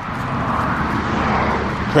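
A passing vehicle: a steady rushing noise that swells toward the middle and eases off.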